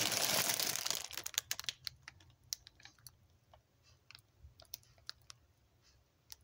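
Handling noise: a rustle for about a second, then scattered light clicks and taps that thin out.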